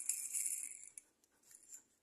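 Brief scratchy rustle, under a second long, of a die-cast toy car being turned over and handled.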